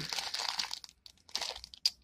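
Clear plastic packaging crinkling as it is handled, in two spells with a short pause between them and a sharp click near the end.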